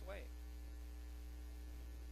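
Steady low electrical mains hum on the recording during a pause in the preaching, with the end of a man's spoken word right at the start.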